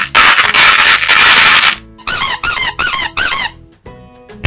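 Chocolate candies poured from a hand into a plastic toy bathtub, a loud rattling patter for almost two seconds. Then a rubber squeaky ball is squeezed four times, each squeak rising and falling in pitch.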